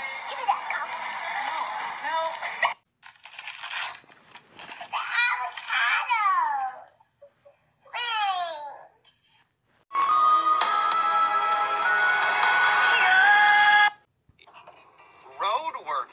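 A run of short, unrelated clips: a child's voice with excited high squeals and giggling, then about four seconds of music with a tone that steps upward in pitch.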